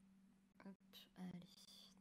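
Near silence: a few softly spoken words over a faint steady low hum, with a brief faint high tone near the end.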